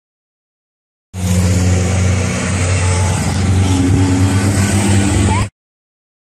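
Racing car engine running loudly at a steady pitch, starting about a second in and cutting off abruptly near the end.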